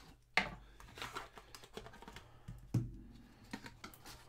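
Small cardboard trading-card box being opened and handled: light rustling and clicking, with two sharper knocks, one about a third of a second in and one near three seconds.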